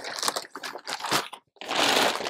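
Crackly rustling and scraping of objects being handled and put back away, in uneven bursts, with a short pause partway through and a louder stretch of rustling near the end.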